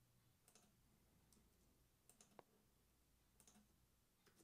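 Near silence with a handful of faint, short clicks from working a computer while copying and pasting a cell.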